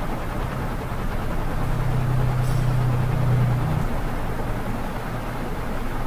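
Steady background noise with a low hum, which grows louder for about two seconds in the middle.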